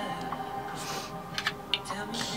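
A few light clicks and taps from plastic makeup items being handled, most of them in the second half, with a short rustle shortly before, over steady background music.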